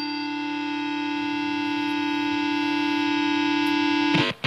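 A single sustained synthesizer chord drones and slowly swells in loudness with a faint even pulse, the opening of a hard rock song before the band comes in.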